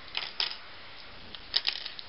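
Light plastic clicks and clatter of Lego pieces being handled and set down, a small cluster just after the start and another about one and a half seconds in.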